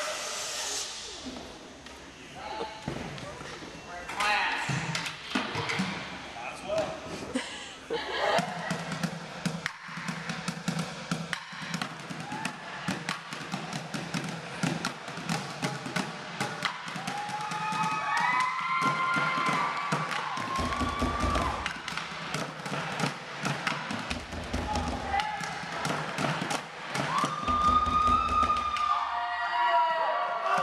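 Bucket drumming: drumsticks rapidly beating on plastic buckets and desktops in a fast, dense rhythm, with deep thuds in three spells in the second half, and voices shouting over it.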